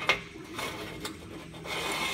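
A rare-earth magnet salvaged from a computer hard drive clicks against an upright aluminum plate, then slides slowly down it with a faint rubbing scrape, held back by eddy-current braking. A second small click comes about a second in, and a steady rustling hiss builds near the end.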